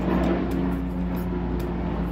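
A steady low motor hum, several even tones held without change, with a few faint clicks of a knife slicing watermelon rind.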